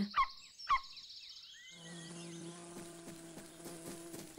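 Cartoon honeybee buzzing sound effect: a thin, high buzz at first, then a steady low buzz with a rich hum of overtones from about two seconds in. Two short rising chirps come near the start.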